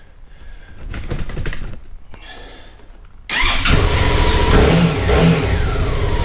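A Suzuki V-Strom 650 XT's V-twin engine is started and catches suddenly about three seconds in, then keeps running.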